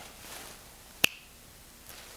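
A single sharp finger snap about halfway through, over quiet room tone.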